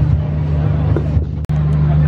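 Steady low rumble of outdoor city background noise, with a brief dropout about one and a half seconds in.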